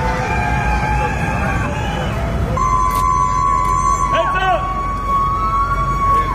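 A long, steady, high-pitched siren-like tone that starts about two and a half seconds in and holds to the end. Under it, several voices call out, as from a crowd at a quayside.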